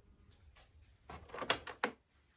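Handling noise as the camera is moved: a rustle starting about a second in, then two sharp clicks close together near the end.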